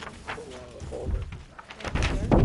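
Sheets of paper rustling and being shuffled on a table, with a faint, low voice in the background.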